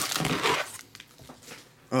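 Foil wrapper of a trading-card pack crinkling as it is handled and picked up, a short burst of crinkling in the first second.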